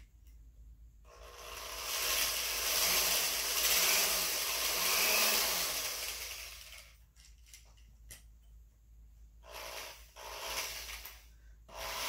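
Power drill running in two bursts, one of about five seconds and a shorter one near the end, its bit boring out the plastic line eye of a speargun reel to enlarge it.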